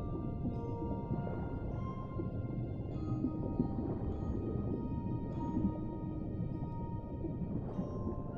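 Music box playing a slow lullaby, single notes struck every second or so and ringing on, over a steady deep underwater rumble.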